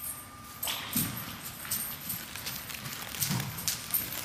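American Saddlebred horse trotting in harness on a dirt arena floor: a run of irregular hoofbeats, with two louder low sounds about a second in and just after three seconds.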